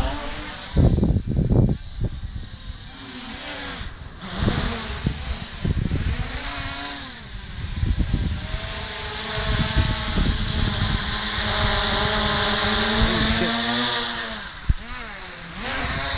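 MJX Bugs 3 quadcopter's brushless motors and propellers whining, the pitch rising and falling as the throttle changes and steadiest in the last few seconds as it hovers close by. Wind buffets the microphone in low gusts about a second in.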